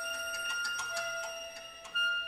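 Contemporary chamber-ensemble music: a held high note runs over quick, evenly spaced clicks that thin out, and the note shifts slightly in pitch about a second in. The sound thins near the end before a loud, sharp entry right at the close.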